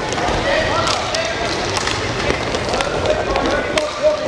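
Inline hockey game in play: players' voices calling out, with several sharp clacks of sticks striking the puck and the floor.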